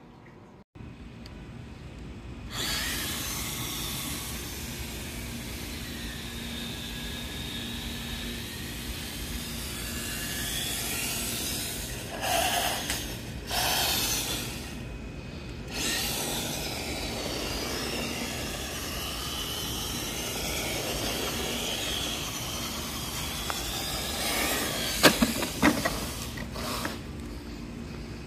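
Traxxas TRX-4 Sport RC crawler driving on concrete, its electric motor and drivetrain whining and rising and falling in pitch with the throttle. Near the end come a few sharp knocks as the truck tips over onto its roof.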